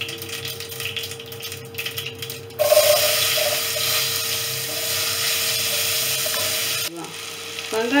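Food frying in hot oil in a pan: a low crackle, then a sudden loud sizzle about two and a half seconds in that holds steady for about four seconds and cuts off abruptly.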